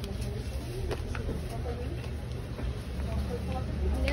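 Shop ambience: a steady low hum with faint voices in the background and a few small clicks.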